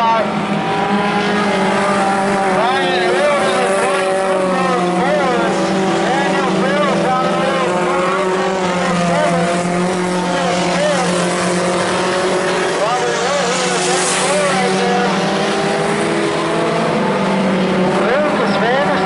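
Several four-cylinder Pony Stock race car engines running together at moderate revs, their pitches rising and falling and overlapping as the cars circle the track at reduced speed.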